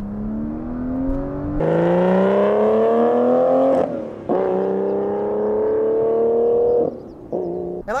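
Aston Martin Vanquish's V12 accelerating hard, its note climbing steadily in pitch. About four seconds in and again near the end, paddle-shift upshifts are heard as brief breaks, each followed by a lower note. The throttle is held flat through the shifts.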